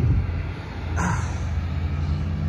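Semi truck's diesel engine idling with a steady low rumble, with a brief rustle about a second in.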